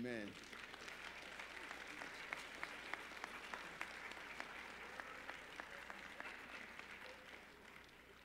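An audience applauding with scattered hand clapping. The clapping fades out over the last second or two.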